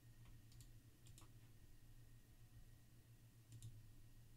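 Faint computer mouse clicks, in three short pairs, over a low steady hum.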